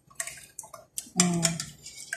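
Thick sauce running and dripping off a metal ladle back into a stainless-steel pot, with a few light clinks of the ladle against the pot.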